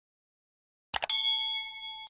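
Sound effect for a subscribe-and-notification-bell animation: about a second in, a couple of quick mouse clicks, then a bell ding that rings out and fades over about a second.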